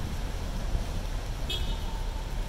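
City street traffic noise, a steady low rumble of vehicles. A brief high-pitched sound cuts through about one and a half seconds in.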